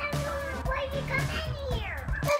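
A young child's voice, drawn out and wavering without clear words, over music playing in the background.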